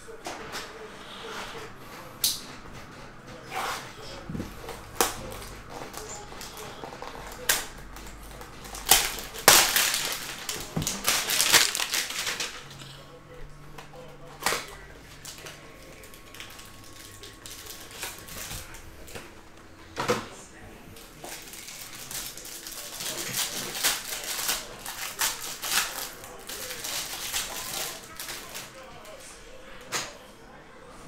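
A cardboard hanger box of baseball cards being torn open by hand, with the plastic wrap around the card stack crinkling and tearing. Scattered clicks and taps of handling, with bursts of crinkling about nine to twelve seconds in and again near the end.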